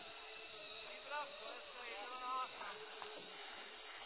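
Faint, distant voices calling out briefly a few times over a low steady outdoor hiss.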